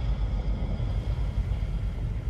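Steady deep rumbling drone with faint sustained high tones above it, a documentary sound-design bed.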